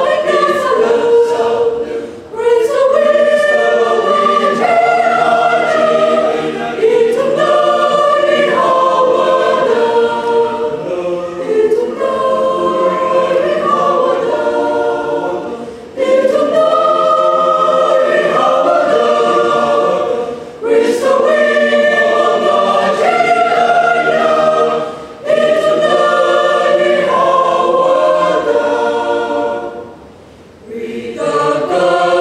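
Mixed choir of men and women singing a cappella in sustained chords, with short breaks for breath between phrases.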